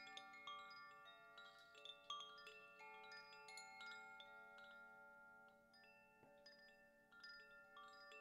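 Wind chimes ringing quietly: many high metal tones struck at irregular moments, each sustaining and overlapping the others. The ringing thins out for a moment near the end before fresh strikes come in.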